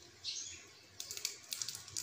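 Close-up mouth sounds of eating grilled prawns: a short slurp, then a quick run of wet clicking smacks from about a second in, as the sauce-coated prawn and fingers are sucked.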